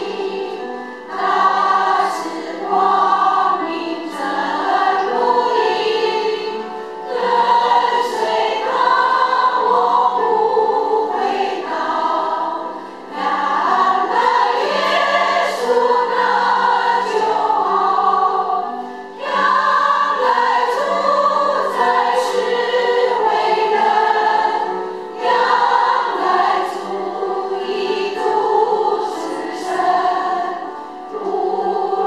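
Women's choir singing a Christian hymn in Chinese, line after line, with brief dips for breath between phrases about every six seconds.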